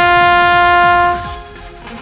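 A tenor trombone holds one long steady note over a rock backing track, then stops about a second and a quarter in, leaving the quieter backing track with guitar.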